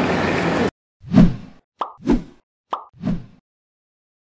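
Busy background noise that cuts off abruptly under a second in, then the sound effects of a subscribe-button animation: three soft pops about a second apart, each of the last two preceded by a short sharp click.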